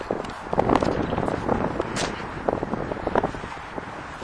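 Footsteps crunching on gravel in irregular steps, mixed with wind noise on the microphone.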